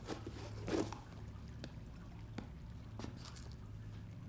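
Quiet room tone: a low steady hum with a few faint, soft ticks and rustles scattered through it.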